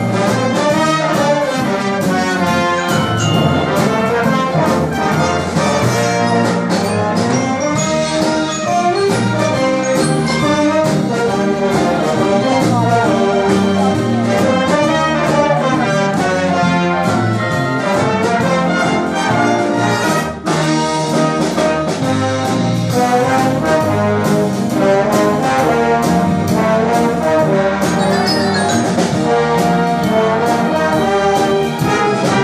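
Symphony orchestra playing live, strings and brass together, in an instrumental passage with no voice. The music is loud and continuous, with a brief drop in level about two-thirds of the way through.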